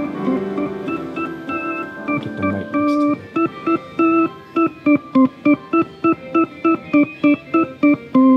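Two-manual drawbar organ being played. It holds chords for the first few seconds, then plays short staccato chords, about three a second.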